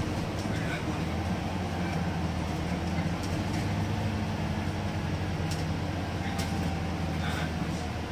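Double-decker bus in motion, heard from the upper deck: a steady low engine and road drone, with a few short rattles and clicks from the cabin.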